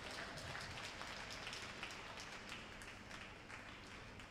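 Sparse applause from a small crowd in a mostly empty ice arena: scattered single claps, tapering off.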